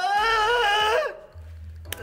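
A man's long strained groan, held at a steady high pitch for about a second as he leans back against the taut string, then a short sharp click near the end as the string pops off.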